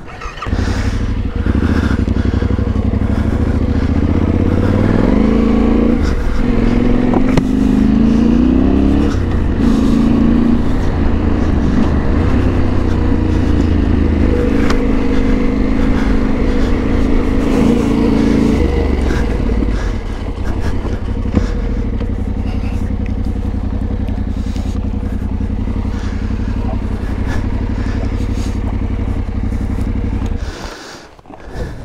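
Yamaha Ténéré 700's parallel-twin engine pulling away and accelerating through the gears, its pitch rising in steps over the first ten seconds, then holding a steady cruise. The revs drop at about twenty seconds and it runs on steadily.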